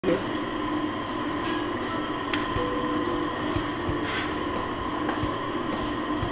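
Steady restaurant room noise: a continuous machine hum and rumble with a few steady tones, and a few faint light clicks.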